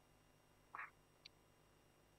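Near silence in a pause between speech, with one faint short sound a little under a second in and a tiny click shortly after.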